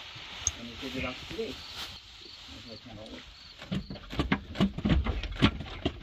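Knocks and clunks of metal parts being worked as a van's manual gearbox is pried back off the engine by hand, a quick run of them in the second half. Crickets chirp steadily behind.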